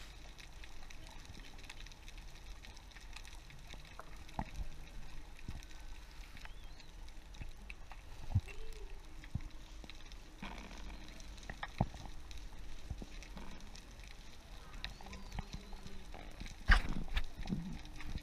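Quiet underwater ambience recorded while freediving over a coral reef: a faint steady water hiss with scattered sharp clicks and knocks. There are sharper clicks about four and eight seconds in and a louder burst of clatter near the end.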